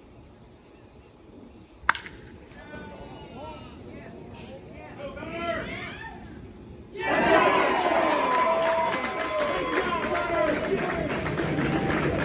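A single sharp crack of a bat hitting a baseball about two seconds in: a home-run hit. Shouting voices follow, and about seven seconds in a crowd breaks into loud cheering and yelling.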